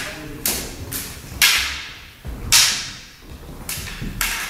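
Sharp knocks from a backsword sparring bout, about five at irregular intervals, from the fencers' stamping footwork on a wooden floor and their weapons. The louder ones trail off in a long echo in a large hall.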